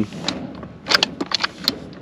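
Slide-out drawer tray in a vehicle's rear storage drawer system being handled, giving several sharp clicks and knocks with its contents rattling, mostly in the second half.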